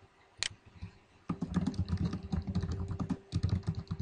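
Typing on a computer keyboard. There is a single click about half a second in, then a quick, steady run of keystrokes from just over a second in.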